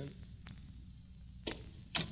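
Faint steady low hum of an old radio transcription recording, with two brief clicks about a second and a half in and just before the next line.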